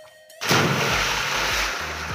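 A person plunging feet-first into a stone well: a loud, sudden splash about half a second in, followed by churning, sloshing water that slowly dies down.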